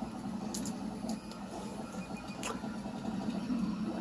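Steady low hum of a FLSUN i3-clone 3D printer's small electronics cooling fans, with a few faint ticks.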